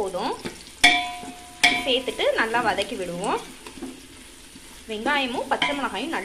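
Sliced onions frying in an aluminium pot while a wooden spatula stirs them, with two sharp knocks about a second in and again shortly after. A voice runs underneath in the background.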